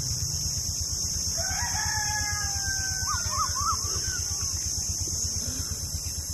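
A rooster crowing once, a drawn-out call starting about a second and a half in, followed by a few quick warbling notes. A steady high insect buzz and a low rapid throb run underneath.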